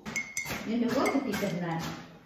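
Dishes and cutlery clinking, a couple of sharp clinks with a brief ring, then a person's voice speaking from about half a second in.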